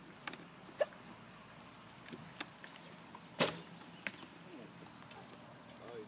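A bare recurve bow, with no sight or stabiliser, shooting: one sharp string snap about three and a half seconds in, then a faint tick about half a second later, typical of the arrow reaching the target. A few soft handling clicks come before the shot.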